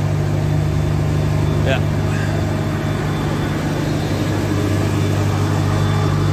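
Fire truck engine running steadily with a constant low hum.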